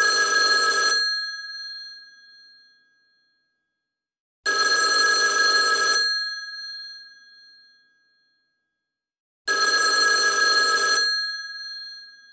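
An old telephone's bell ringing three times, some five seconds apart. Each ring lasts about a second and a half, and the bell's tone fades away after each one.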